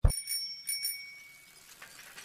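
A bicycle bell rung a few times in quick succession, its ring fading out by about halfway through.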